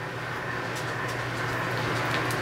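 Steady low hum and hiss of room background noise, with a few faint rustles and ticks as plastic mascara packaging is handled.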